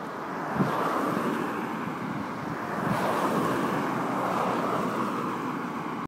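Cars passing along a road: a steady rush of tyre and engine noise that swells about half a second in and stays loud.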